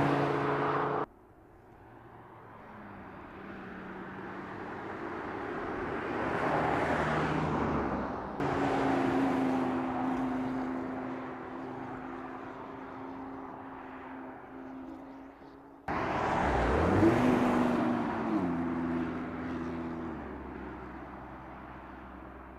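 Audi TT-RS Roadster's turbocharged five-cylinder engine in a string of separate drive-by shots joined by hard cuts. In each shot the engine note swells as the car comes near and then fades. The last and loudest pass, near the end, drops in pitch in steps as the car changes gear.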